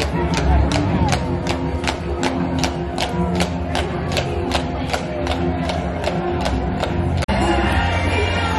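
Parade music playing loudly over a crowd, driven by an even beat of sharp ticks about three a second. About seven seconds in it cuts off abruptly and different music takes over.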